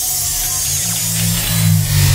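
Cartoon music sting for a magical effect: a rushing hiss over low held notes that swell in the second half.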